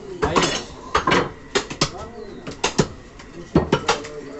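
Butcher's cleaver chopping beef on a wooden log chopping block: about ten sharp blows at an uneven pace, often two in quick succession.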